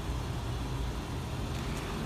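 Steady low rumble of motor-vehicle noise with no distinct events.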